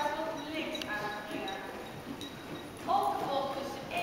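Hoofbeats of a horse moving over the sand footing of an indoor riding arena, with a person's voice heard at the start and again, louder, near the end.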